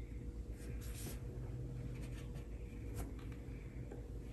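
Paintbrush strokes on paper, laying on gouache: several short, quiet, scratchy swishes over a steady low hum.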